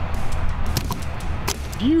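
A small stainless-steel knife stabbed down into a whole coconut: a light tap, then a sharp knock about one and a half seconds in as the blade punches into the shell.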